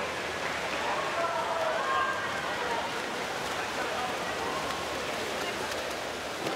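Steady wash of splashing from swimmers racing freestyle, mixed with crowd noise. Faint shouts and cheers sound in the first half.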